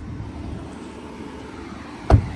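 Lamborghini Huracán's V10 engine idling with a steady low rumble.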